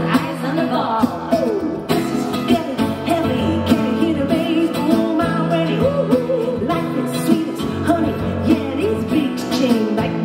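Live pop song: a woman singing lead into a microphone over acoustic guitar and keyboard accompaniment, the voice sliding between notes in runs.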